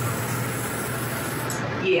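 Water running from a kitchen tap to fill a glass, shut off sharply about one and a half seconds in, over a steady low hum.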